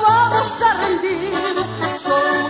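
Ranchera music recording playing: a held melody note wavering in pitch in the first second, over a steady alternating bass line and accompaniment.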